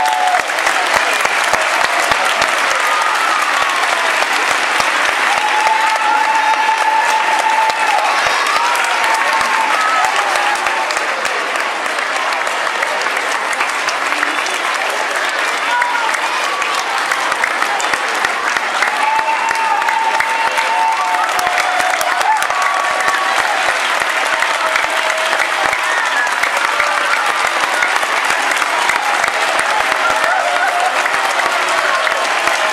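Audience applauding steadily, a dense clatter of many hands clapping, with a few voices calling out over it.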